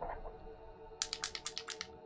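A quick run of about eight keystrokes on a computer keyboard, starting about a second in, over soft ambient background music.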